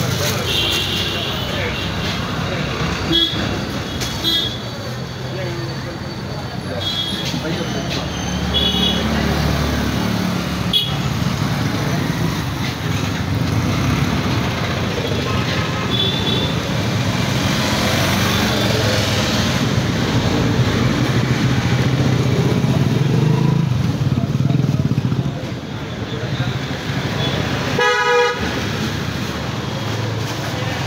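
Street traffic noise with passing vehicles and indistinct background voices, and a short vehicle horn toot near the end.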